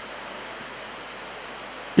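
Steady, even background hiss with no other sound in it.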